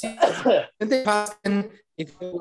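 A man's voice in three short, broken bursts of half-spoken sound, the first with a rough, throat-clearing onset.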